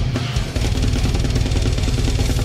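Death metal drumming on a large drum kit with many cymbals: after a short break in the kick drums, fast, unbroken double bass drum starts about half a second in under the cymbals and snare.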